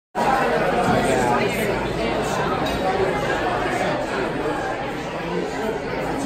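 Restaurant dining-room chatter: many diners talking at once in a steady hubbub of overlapping conversation.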